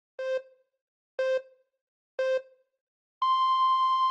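Countdown-timer sound effect: three short electronic beeps a second apart, then a longer beep an octave higher starting about three seconds in.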